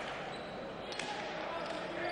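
Leather pelota ball in a hand-pelota rally: a sharp crack about a second in as the ball is struck by bare hand or hits the fronton wall, over the steady background noise of the hall.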